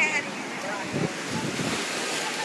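Ocean surf washing up the beach as waves break, with wind buffeting the microphone in gusts about a second in.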